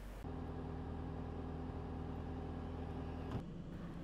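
A vehicle engine idling steadily, an even low hum with no change in speed, that cuts off shortly before the end.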